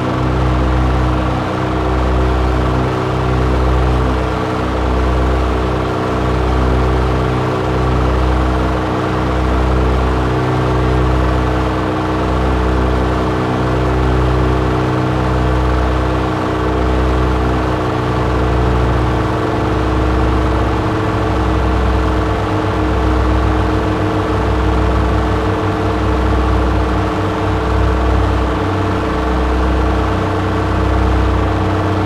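Analogue synthesizers playing a dense, noisy drone of many held pitches over a low bass that throbs slowly, about once a second, with reverb and delay on the mix. About two-thirds of the way through, some of the lower pitches shift as the patch is tweaked.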